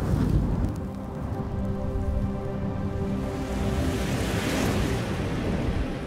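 Cinematic logo sting: a low rumble and rushing noise with a faint sustained drone underneath, swelling about four and a half seconds in, then fading out.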